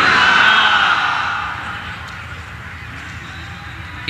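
A large crowd of men answering together, most likely with 'Alhamdulillah', heard through the loudspeakers with echo. It fades over the first two seconds into a low steady hum of the gathering and the sound system.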